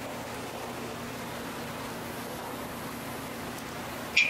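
A steady hum and hiss with a low, constant tone underneath, unchanging throughout, like a running fan or ventilation.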